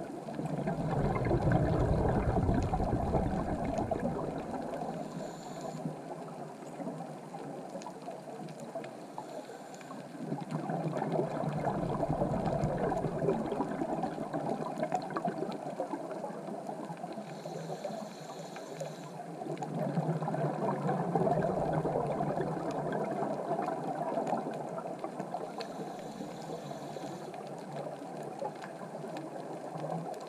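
Scuba diver breathing through a regulator underwater. Each exhale is a few seconds of low, rumbling bubbling, coming about every nine or ten seconds over a steady underwater hiss.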